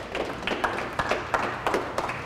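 A small audience clapping: many irregular sharp claps over a steady patter.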